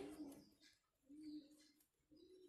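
Near silence: room tone, with one brief, faint low-pitched hum a little over a second in.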